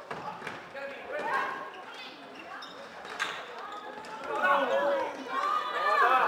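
Players' and spectators' voices calling and shouting across an indoor floorball game, getting louder near the end, with a few sharp clacks of floorball sticks striking the plastic ball.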